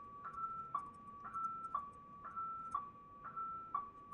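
A quiet two-note tone repeating evenly, high then low, each note held about half a second so the pair comes round once a second. Faint pen-on-paper scratching sits under it.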